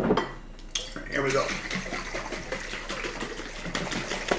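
Water and honey sloshing in two capped glass mason jars being shaken by hand, after a knock of glass at the start: the water shake test for real versus imitation honey.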